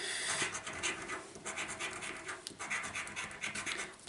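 A coin scratching the coating off a paper scratchcard in a run of short, irregular rasping strokes.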